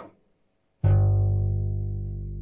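Four-string electric bass guitar: a single note plucked on the lowest string at the third fret, starting suddenly about a second in, then ringing on and slowly fading.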